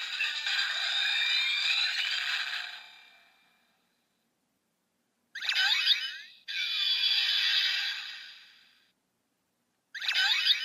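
Electronic sounds from the speaker of a DX Kamen Rider Chronicle Gashat toy: a jingle fading out over about three seconds, a short silence, then a swooping sound effect followed by a few seconds of electronic music as the toy lights up green, and another swoop right at the end.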